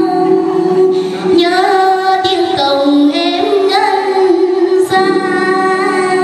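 A woman singing into a microphone over musical accompaniment, holding long notes with some slides in pitch.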